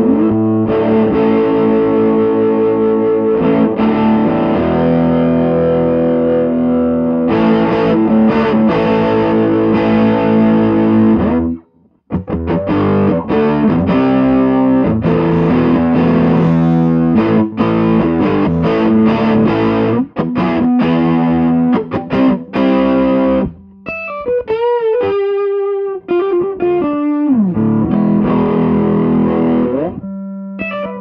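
Electric guitar with humbucker pickups played through a Dumble-modded Fender Bassman tube amp, with overdriven tone. Strummed, ringing chords stop briefly about twelve seconds in and then start again. Near the end comes a short single-note phrase with vibrato.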